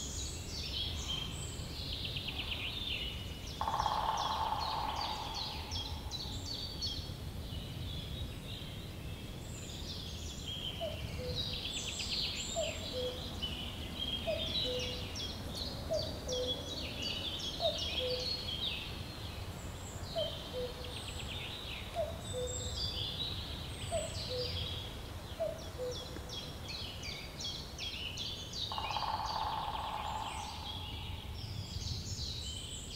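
Ambient field recording of many birds singing and chattering over a low, steady rumble. Through the middle a lower, falling two-note call repeats about once a second, and a short rush of noise comes about four seconds in and again near the end.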